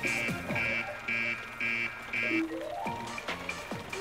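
Cartoon alarm beeping five times, about two beeps a second, over background music, followed by a short rising run of notes.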